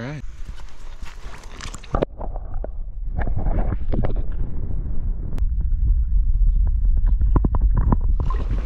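Muffled underwater sound from a camera dipped in a stream: a deep, steady rumble of moving water with many small knocks and clicks. It turns muffled about two seconds in, as the sound goes underwater.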